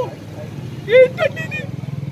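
A vehicle engine running steadily nearby, a low even drone, with a short spoken phrase from a man about a second in.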